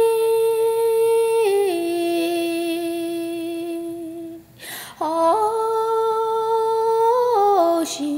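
A woman humming long, drawn-out notes in two phrases, each held steady and then stepping down in pitch, with a quick breath between them about halfway through.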